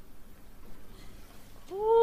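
A short lull in the opera with only faint stage noise. Near the end a singer's voice comes in on a note that slides upward into a held pitch.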